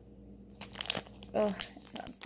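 Small plastic zip-top bags of wax melts crinkling as they are handled, in short scattered rustles, with more around the first second and again near the end.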